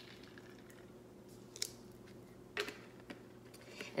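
Quiet room tone with a faint steady hum, broken by a few short, soft clicks and taps about one and a half seconds in and again later, from handling the plastic juice bottle and glassware.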